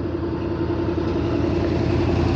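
A motor vehicle engine running close by: a steady low hum with one held tone, growing slightly louder.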